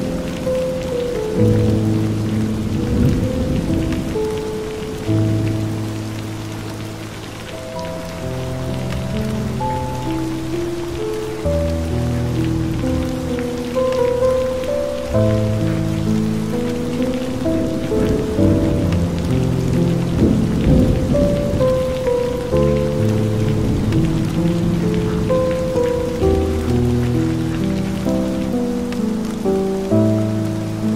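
Steady rain falling, mixed with slow ambient music tuned to 432 Hz: long held notes, a low bass line under a higher melody that changes every second or two.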